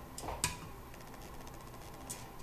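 Two light clicks, the second sharper, about half a second in: kitchen utensils knocking against a stoneware fermenting crock.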